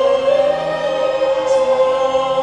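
Live school orchestra with strings accompanying a group of singers. The music holds one long, steady note.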